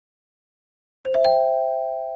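A rising three-note chime about a second in: the notes are struck in quick succession, lowest first, then ring together and slowly fade.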